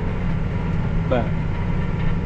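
Tractor engine running steadily while pulling a disc through the field, heard inside the closed cab as a low drone.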